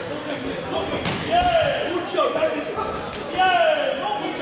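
Shouts from spectators or cornermen in a large hall: two drawn-out calls, each falling in pitch, with a few scattered thuds, typical of fighters' feet or gloves in the ring.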